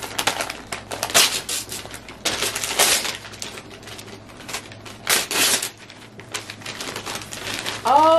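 Shiny silver gift wrapping paper being torn and crumpled off a box, in several rough bursts of tearing and crinkling, loudest about a second in, near three seconds and just after five seconds.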